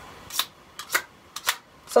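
An aerosol deodorant can making about five short, sharp bursts close to a microphone, tried out as a sword sound effect.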